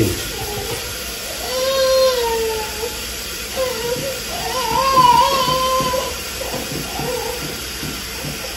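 A woman humming a tune wordlessly, in two long wavering phrases, over a faint steady hiss.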